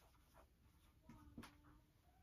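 Dry-erase marker writing on a whiteboard, faint: short strokes of the felt tip, with a brief squeak of the tip about halfway through and a light tap soon after.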